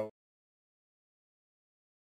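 Complete digital silence: the soundtrack cuts off just after the tail of a man's voice at the very start.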